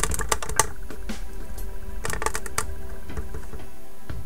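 Two short bursts of rapid clicking and tapping, one at the start and one about two seconds in, over steady background music.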